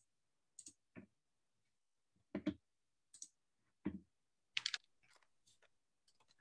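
Faint, irregular clicks and light knocks, about ten scattered over six seconds, of typing on a computer keyboard.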